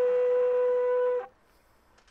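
A long straight brass herald trumpet blowing a single steady held note for about a second and a quarter, then stopping.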